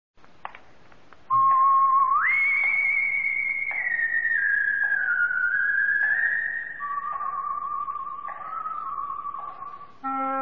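Opening theme music of an old-time radio drama: a lone high, pure-toned melody line starts about a second in, leaps up an octave a second later, then slides slowly downward in long held notes, dropping lower again near the end. Faint recording hiss and a single click come before it.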